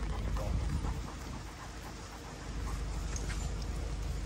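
A pack of dogs and puppies milling about on wet ground, with the light patter and scuffing of paws and short scattered ticks, mostly in the first second, over a low steady rumble.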